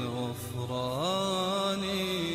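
Devotional vocal chanting of a nasheed with long, drawn-out sliding notes and no percussion. The pitch glides up about a second in and holds.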